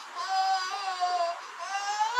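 A baby whining in long, high-pitched cries: one held for over a second, then another starting near the end.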